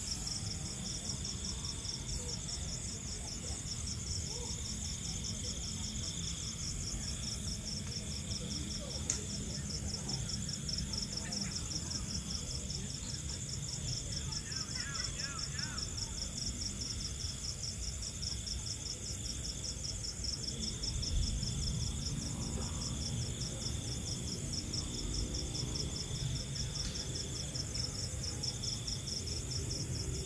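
Night insect chorus: crickets chirring in a steady, rapid, even high-pitched pulse, with a second steady trill a little lower, over a low rumble.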